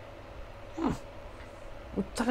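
A single short vocal sound just before a second in, rising briefly and then falling steeply in pitch, over a quiet background.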